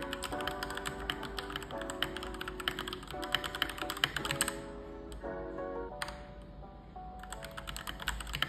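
Fast typing on a Keychron K2 mechanical keyboard: a quick, dense run of key clicks that breaks off for about two seconds past the middle, then starts again, over background music.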